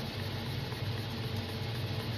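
Steady low hum with a light hiss, as of a fan or other small machine running in the room.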